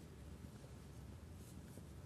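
Near silence in a large church: a steady low room rumble, with two brief faint rustles of sheet-music paper about one and a half seconds in.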